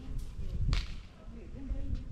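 A single sharp crack about two-thirds of a second in, over a low background of street voices.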